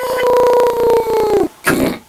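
A man's voice making an airplane noise: one long, buzzy held note that sags in pitch and cuts off after about a second and a half, followed by a short breathy vocal burst.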